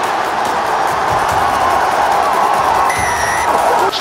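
Stadium rugby crowd cheering loudly as an Ulster attack breaks clear toward the try line, over background trap music. A short, steady, high whistle-like tone sounds about three seconds in.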